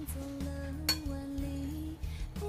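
Background music with held notes, and about a second in, a metal spoon clinks once against a ceramic bowl.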